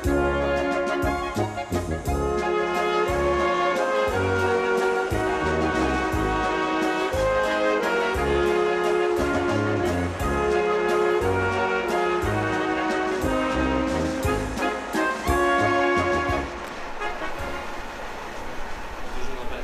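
Background music played on brass instruments, held notes changing in steps over a pulsing bass line, getting quieter near the end.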